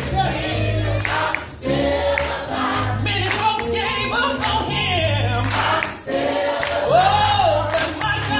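Gospel choir singing with a soloist on a microphone, over instrumental backing with steady low notes. A held vocal note swoops up and back down near the end.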